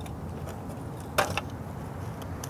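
Steady low street background with one short sharp click, then a brief faint rattle, a little over a second in.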